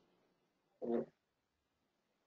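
Near silence, broken about a second in by one short pitched sound, a quarter of a second long.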